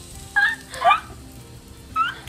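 Two short bursts of a girl's laughter, about half a second apart, over faint background music.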